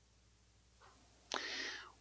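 A man's audible breath drawn in sharply through the mouth, about a second and a half in, after near silence, just before he speaks.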